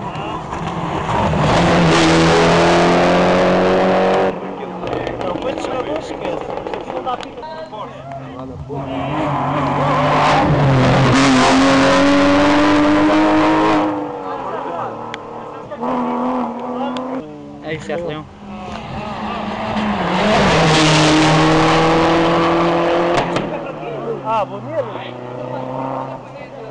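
Rally cars driving past at speed on a special stage, engines at high revs, three loud passes about ten seconds apart. The engine pitch steps and slides within each pass, and the first pass cuts off abruptly about four seconds in.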